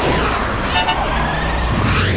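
Animated sound effects: sweeping whooshes gliding in pitch, with a short horn-like toot about a second in.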